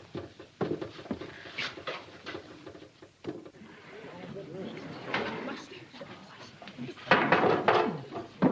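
Indistinct voices in a small room, with a few knocks and clatters from work at a bakery's bread oven; one voice comes up loud near the end.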